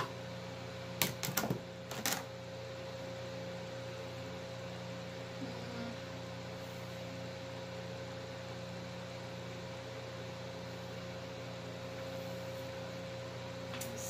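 Steady low room hum with a faint steady whine above it, as from a fan or appliance. In the first two seconds, a few short clicks or rustles as synthetic braiding hair is handled.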